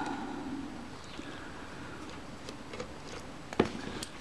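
Small precision screwdriver turning a small brass screw out of a camera's metal mirror box: faint, scattered ticks of metal on metal, with one sharper click near the end.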